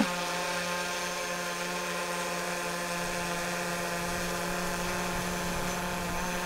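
DJI Mavic 3 Pro quadcopter hovering, its propellers giving a steady, even whine made of many stacked tones over a low hum.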